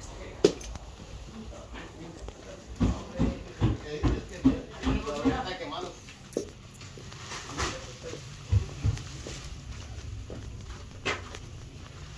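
Indistinct voice-like sounds, with no clear words, for a couple of seconds in the middle. A sharp click comes about half a second in, and a few short knocks come later.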